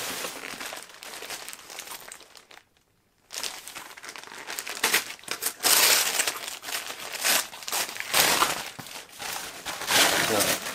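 Christmas wrapping paper being torn and crumpled as a present is unwrapped. It comes in irregular bursts of rustling, with a brief silent gap about three seconds in and the loudest handling between about five and nine seconds.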